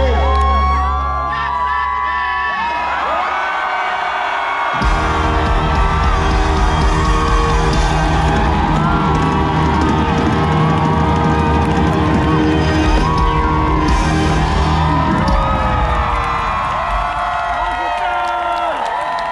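Live concert music over stadium speakers, with amplified vocals and a crowd cheering. The bass and drums drop away about a second in, leaving the voices. The full band comes crashing back in about five seconds in and thins out again near the end.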